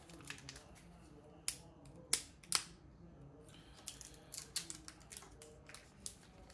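Trading cards and their packaging being handled on a table: a string of sharp clicks and crinkles, the loudest two about two seconds in and a quicker cluster of smaller ones later.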